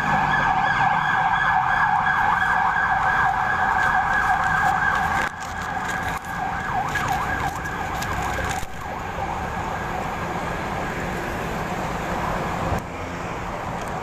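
Emergency vehicle siren warbling on the road, loud for about five seconds, then weaker and gone by about nine seconds, over steady traffic noise.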